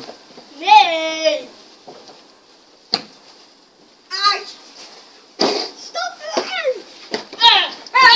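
Children's voices calling out and exclaiming in short bursts, one drawn-out call about a second in, with a single sharp click about three seconds in.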